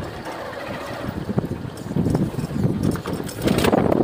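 Motorcycle engine running while riding over a rough dirt trail, with irregular rumble and a few sharp knocks from the bumps.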